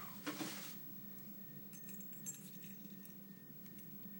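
Faint, light clicks and clinks as metal tweezers probe inside an AK-47 buttstock cleaning-kit tube to pull out a packed item.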